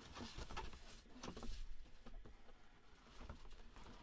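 Cardboard box being opened and handled by hand: faint, scattered scrapes, crinkles and light knocks of cardboard.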